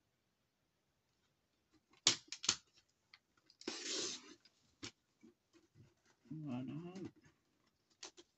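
Sharp plastic clicks as card is set against a paper trimmer's guide, then one short scraping slide of the trimmer's cutting blade through the card a little before the midpoint, followed by another click.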